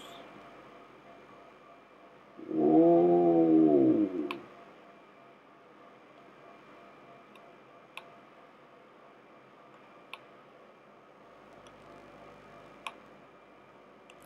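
A man's long drawn-out vocal sound, a hum or 'ooh' that rises then falls in pitch, for about two seconds a few seconds in. Later come a few faint single clicks, like a computer mouse.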